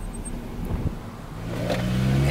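A car being driven: low road and wind rumble, joined by a steady low engine hum about one and a half seconds in as the sound grows louder.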